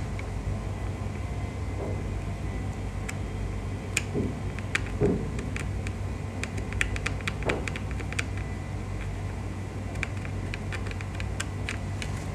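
Light, irregular clicks and taps of a pointed metal tool touching the pins and parts of a laptop motherboard, over a steady low hum.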